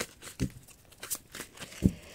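A deck of tarot cards being handled and shuffled in the hands: a few soft, scattered card taps and slides, the loudest tap near the end.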